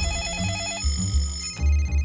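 A phone ringing with a rapid electronic warble that cuts off about a second in, over music with deep bass pulses.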